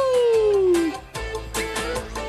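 A cartoon character's sung "uhu", held long and sliding down in pitch, ending just under a second in; then cartoon background music.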